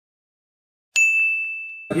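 Logo sound effect: silence, then about halfway through a single bright bell-like ding that rings on one high tone and fades away.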